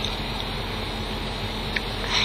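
Steady background hiss with a faint low hum, and one short faint click near the end.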